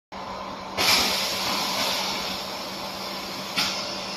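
Semi-automatic PET bottle blow moulding machine running with a steady hum, with a sudden loud hiss of compressed air about a second in that fades away over a second or so, and a second, shorter hiss near the end.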